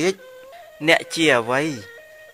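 A man's voice in a chanted, sing-song sermon delivery, holding one long wavering vowel that rises and falls in pitch, over faint steady background music.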